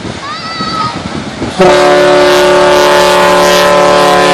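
The S.S. Badger's steam whistle blowing one long, loud, steady blast that starts about a second and a half in, a rich tone of many even harmonics. Before it, a few short bird calls.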